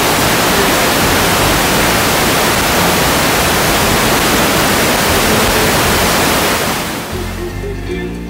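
A loud, steady rushing hiss of even noise that fades out about seven seconds in, as the band's instruments and bass come in underneath.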